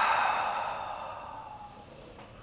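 A woman's long, audible exhale through the mouth, a sighing breath out that fades away over about two seconds.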